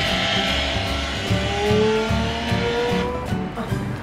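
A car engine revving with slowly rising pitch over music, playing from a smartphone's speaker inside a cardboard VR viewer.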